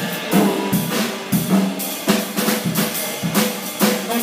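Jazz drum kit played alone in a break, with sharp snare and bass drum hits and rimshots in a busy, uneven rhythm over ringing cymbals.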